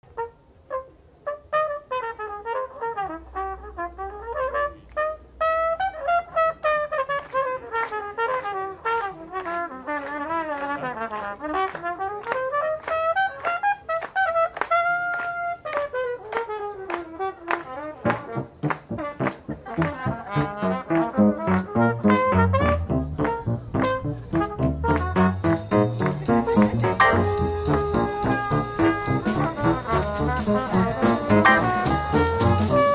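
Jazz trumpet playing a slow, bending solo melody over light ticking percussion; bass comes in about halfway through, and the full band with cymbals joins near the end.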